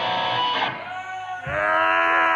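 Amplified electric guitar notes ringing out and fading. About one and a half seconds in, a louder chord is struck and held.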